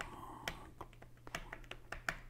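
Typing on an iPad Pro's keyboard case: about ten light key clicks, irregularly spaced.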